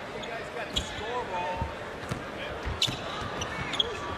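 Live basketball arena ambience: a steady crowd murmur with a few ball bounces on the hardwood court and a brief distant shout about a second in.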